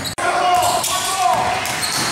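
Basketball bouncing on a hardwood gym floor during play, with players' voices echoing in the hall. The sound cuts out for an instant just after the start.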